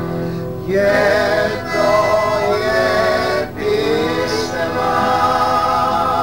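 A group of voices singing a song together, phrase after phrase, with a short break about every three seconds.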